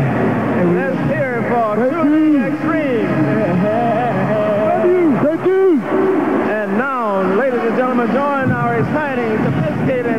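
Male vocal group singing long, sliding melismatic runs into microphones, several voices overlapping, with held low notes beneath.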